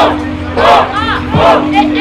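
A crowd of spectators shouting and calling out together in repeated rising-and-falling yells. A hip-hop beat with a deep falling bass note plays underneath.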